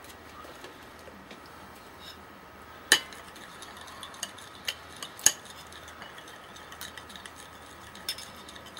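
A spoon clinking against a small dish while a mustard dipping sauce is mixed: one sharp clink about three seconds in, then a few lighter clinks a couple of seconds later.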